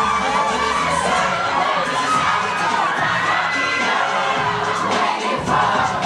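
Audience cheering and shouting loudly over a pop dance track with a steady bass line.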